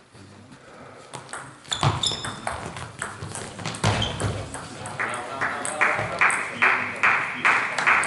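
Celluloid-style table tennis ball clicking off rubber bats and the table in a doubles rally. The hits start about a second in and become louder and more regular in the second half, roughly two a second, with echo from the hall.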